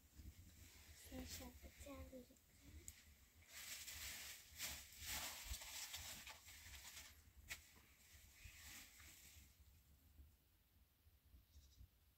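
A quiet moment: a short, soft vocal sound about a second in, then a few seconds of rustling hiss and a single sharp click, fading to near silence near the end.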